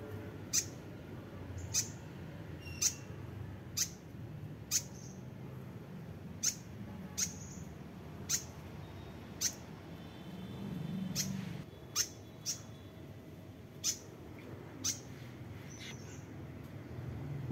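Fantail nestlings giving short, high chirps, about one a second.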